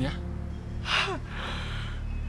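A woman's gasp of shock about a second in: a sharp breathy intake that ends in a short falling voiced sound, followed by softer breathing.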